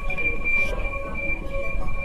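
Train-like ride noise: a steady high whine with a low uneven rumble under it, typical of an electric airport shuttle train running.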